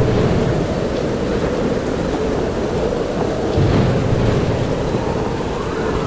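Rainstorm at sea: a steady rushing of rain, wind and waves, swelling slightly a little past halfway.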